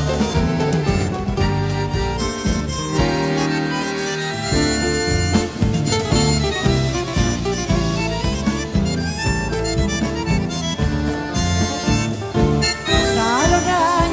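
Instrumental passage of a live folk band: a bandoneón plays held chords and melody over guitar accompaniment and a pulsing bass line in a steady rhythm.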